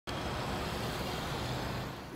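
A small motorcycle engine running as it rides past, over a steady hiss of street traffic.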